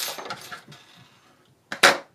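Light metallic clinks from a small pair of embroidery scissors being handled on a tabletop just after trimming a yarn end. Then quieter handling of the crochet fabric, and a short, sharp burst of noise near the end that is the loudest moment.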